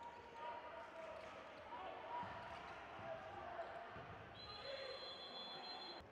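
Handball being played in a sports hall: the ball bouncing on the court under crowd voices, then a referee's whistle blown in one long steady blast from a little past four seconds in, stopping play.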